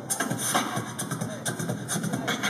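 Beatboxing: vocal percussion keeping a quick, steady beat, with the double dutch ropes slapping the pavement in time.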